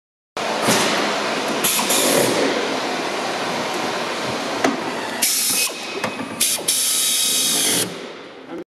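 Pneumatic tool on an air line running in several short bursts with a high hiss, the longest lasting about a second near the end, over steady workshop background noise.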